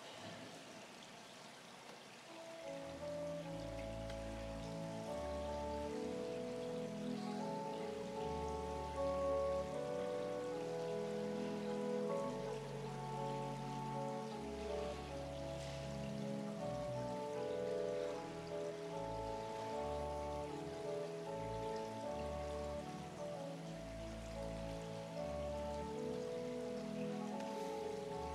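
Slow instrumental church organ music: sustained chords with deep bass notes under them, starting about two and a half seconds in and changing slowly.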